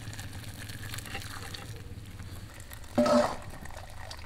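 Hot water with shredded radish pouring from a steel bowl through a wire-mesh sieve into a clay basin, over a steady low hum. A short, louder sound breaks in about three seconds in.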